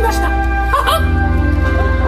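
Theme-park stage-show soundtrack: sustained orchestral music with voices calling over it, and a pulsing bass beat coming in about halfway through.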